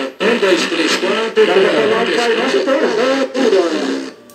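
A man's voice, captured by a delay pedal used as a sampler, replayed over and over with a radio-like sound, cutting off at the end.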